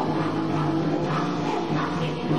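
Punk rock band playing live, with sustained guitar and bass notes over a dense wash of band sound.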